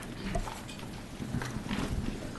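Room noise of a council chamber: scattered faint knocks, rustles and shuffling steps as people move about and handle papers, over a low murmur.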